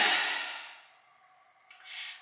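A woman's short wordless vocal sound, pitch rising then falling, that trails off into a breathy exhale. Near the end comes a short breathy noise.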